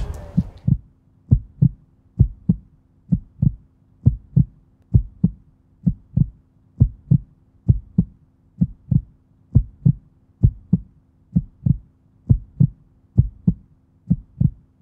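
Heartbeat sound effect: a steady lub-dub double thump about once a second, over a faint steady hum.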